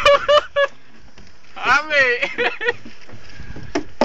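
A person's voice: a few short grunted "uh" sounds, then, about a second and a half later, a drawn-out call whose pitch rises and falls, followed by a few shorter calls.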